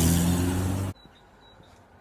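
A motor vehicle passing close by, engine and tyre noise loud, cut off abruptly just under a second in, leaving faint outdoor quiet.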